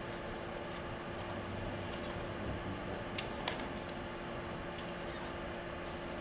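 Faint, scattered short clicks over a steady hum and hiss, with no clear rhythm; the strongest clicks come about three seconds in.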